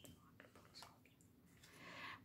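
Near silence: room tone with a few faint soft ticks and a light rustle toward the end, as tarot cards are handled on a cloth.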